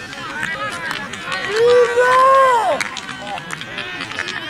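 Voices shouting on the sideline of a football match, with one loud, long, high-pitched yell about halfway through that falls away at its end.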